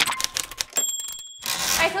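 Title-animation sound effects: a quick run of typewriter-like clicks in the first half-second, a brief high ding a little under a second in, then a whoosh about a second and a half in, just before a woman's voice begins.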